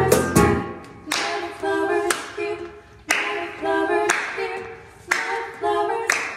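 A piano chord from a digital piano dies away, then two women's voices sing in a cappella harmony over hand claps on a steady beat, about one clap a second.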